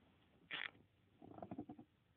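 Near silence, with a short faint breathy sound about half a second in and then a brief low, creaky grumble, like a character's sigh and mutter.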